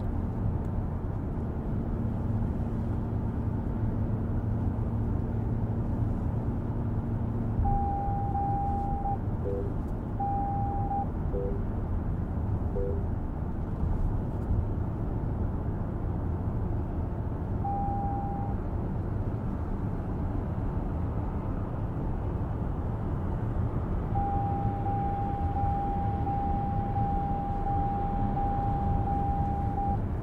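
Interior road noise of a 2023 Lexus RX 500h hybrid SUV at highway speed: steady tyre and road rumble, with a low engine hum that drops away about seven seconds in. A few short electronic beeps follow, along with a steady high tone that comes and goes and holds for the last several seconds.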